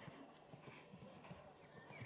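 Faint, muffled hoofbeats of a horse cantering on a sand arena.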